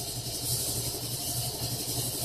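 Steady low hum with a faint pulse and a high hiss: refrigerators and fish-tank equipment running.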